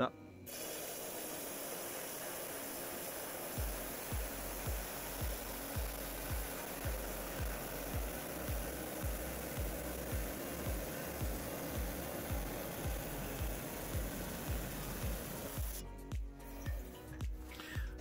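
Lapidary band saw running wet and slowly cutting through a hard agate nodule, a steady even rush that stops near the end as the cut finishes. A regular low thump about twice a second runs beneath it from a few seconds in.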